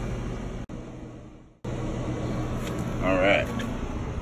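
Steady hum of a residential central air-conditioner condenser unit running. About two-thirds of a second in the sound cuts out sharply, fades almost to silence and comes back abruptly about a second later; a man's voice is heard briefly near the end.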